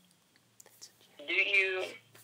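A boy's voice making one short, held, high-pitched vocal sound lasting under a second, after a few faint clicks.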